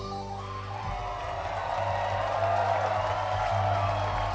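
Live rock band of electric guitars and bass holding a sustained chord, with a crowd cheering that grows louder from about a second in.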